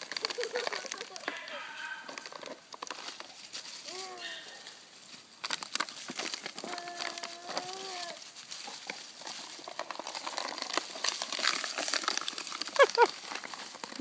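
Teddy Roosevelt Terrier puppies playing over a plastic water bottle: the bottle crinkles and crackles amid rustling dry leaves. Short high puppy whines and yips come through it, with one longer held whine in the middle and a quick run of yelps near the end.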